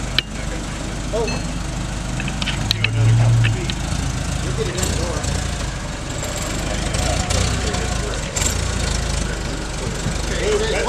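Forklift engine running steadily with a heavy load on the forks, the note rising louder briefly about three seconds in. A few sharp clicks and knocks sound over it.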